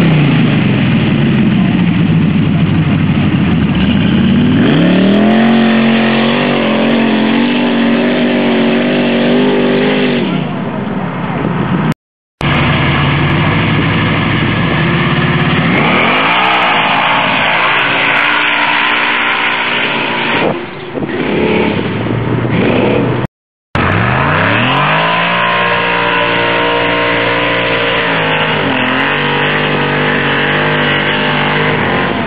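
Off-road hill-climb vehicles at full throttle on loose sand, engines revving up and holding high revs. Three separate runs are cut together, each with the engine note climbing as the vehicle launches; the sound breaks off twice, about 12 and 23 seconds in.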